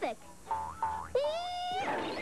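Cartoon sound effects over music: two short steady tones, then a longer springy tone that rises in pitch, ending in a brief noisy crash.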